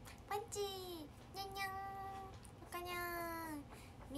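A young woman's voice making three drawn-out, sung cat-like calls, each just under a second, the pitch stepping down from one call to the next.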